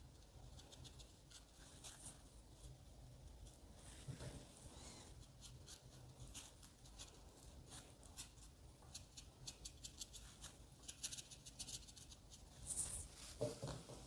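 Very faint, soft scratching of a small watercolour brush stroking on watercolour paper: many short light strokes, a little louder in the last few seconds.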